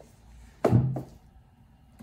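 A single dull thunk just over half a second in, with a brief low ring after it: the boxed laptop set down on the table.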